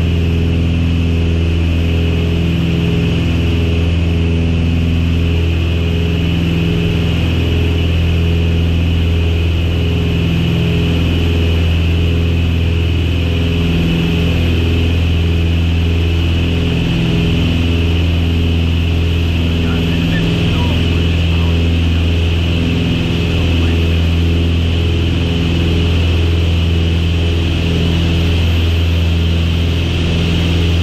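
Beechcraft Baron's two piston engines and propellers running steadily on approach, a loud low drone with a slow, regular waver in it.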